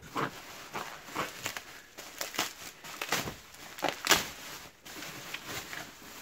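Plastic bubble wrap crinkling and rustling as hands grip and lift it, in a run of irregular crackles.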